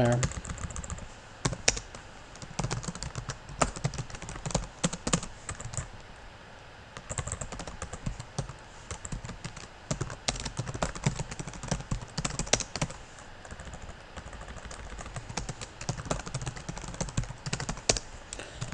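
Typing on a computer keyboard: irregular runs of keystrokes with short pauses between them.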